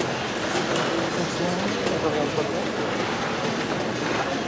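Indistinct murmur of many voices in a hall, with light rustling and clicks; the band is not playing.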